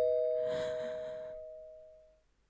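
A two-tone ding-dong doorbell chime, its higher and lower notes ringing on together and fading away over about two seconds. A soft rush of breath-like noise comes in about half a second in.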